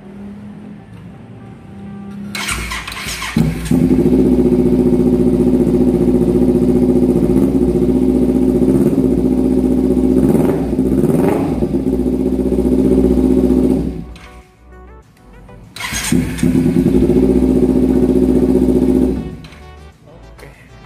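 Kawasaki Ninja 250 FI parallel-twin engine breathing through a custom header and carbon slip-on silencer. It starts about two to three seconds in and runs loudly and steadily, with a couple of brief revs about ten seconds in. It cuts out about fourteen seconds in, then is heard running again for about three seconds near the end.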